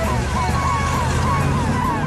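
Animated fire engine's siren yelping in quick rising-and-falling sweeps, several a second, over the low rumble of its engine as it pulls out.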